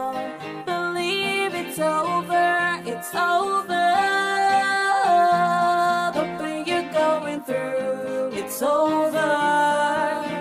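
Soundtrack song: a voice singing a slow melody with long held, sliding notes over guitar accompaniment.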